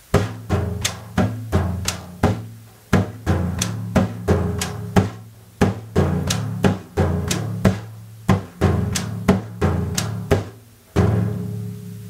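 Meinl Sonic Energy wave drum (ocean drum) played by hand on the lap in a repeating pa–dum–chick exercise. Finger-pad pa slaps, thumb dum bass strokes and chick taps on the shell follow the pattern pa, dum, chick, pa, dum, chick, pa, rest, at about three strokes a second. There is a short break near the end.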